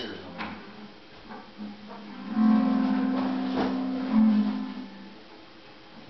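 Electric guitar through an amplifier: a low note rings steadily for about three seconds, starting about two seconds in and fading out, with a sharp click near the middle.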